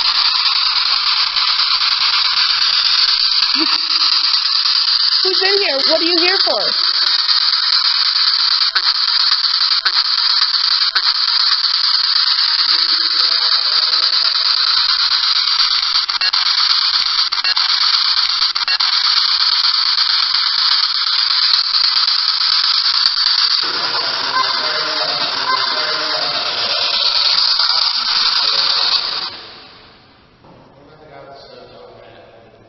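Loud, steady hiss from a heavily amplified audio recording being replayed as an EVP. Faint voice-like fragments surface in it a few times, which the investigators hear as "tissue" and "go in". The hiss cuts off about a second before the end.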